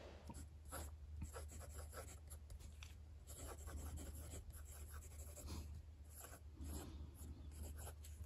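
Pilot Custom 823 fountain pen with a broad nib writing on Endless Regalia paper: faint, irregular scratching of the nib across the page, stroke by stroke.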